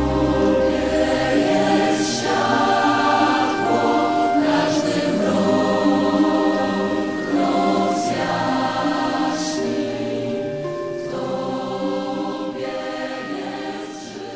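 Choral music: a choir singing slowly in long held notes, the sound fading down toward the end.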